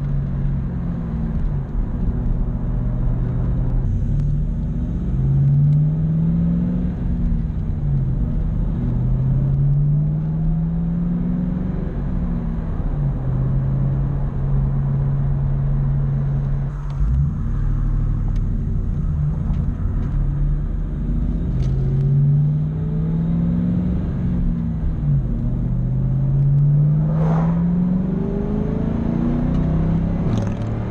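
2000 Ford Mustang GT's 4.6-litre V8 with Flowmaster 40 Series mufflers, heard from inside the cabin on the road: the engine note climbs in pitch several times as the car accelerates and drops back at each upshift, with a steady stretch of cruising in the middle.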